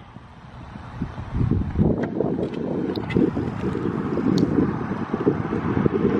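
Wind buffeting the microphone: a low, irregular rumble that builds about a second in and keeps on, with a few faint clicks over it.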